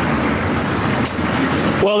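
Steady outdoor city background noise, a rumbling hiss much like road traffic, picked up by an open field microphone before the reporter starts to speak near the end.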